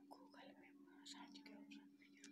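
Near silence: faint room tone with a low steady hum and a few faint, indistinct sounds.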